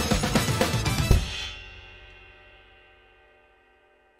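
Acoustic drum kit played along with a funk recording, ending on one final loud hit about a second in, after which the last notes ring out and fade away over about three seconds.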